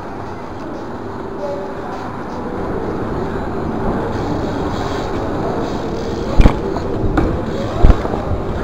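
Bike tyres rolling over a hard paved surface, the rumble growing louder as the bike picks up speed, with two sharp knocks from the bike near the end, the second the loudest.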